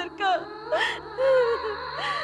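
A woman sobbing and wailing in grief, her voice quavering and breaking, with a sharp gasping breath near the middle.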